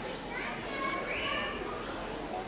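Indistinct chatter of several children's voices in a large hall, with no music playing.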